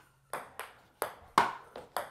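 Ping-pong ball bouncing on a wooden floor and being hit by paddles in a rally: a quick series of sharp clicks, about six in two seconds at uneven spacing, the loudest about a third of the way through.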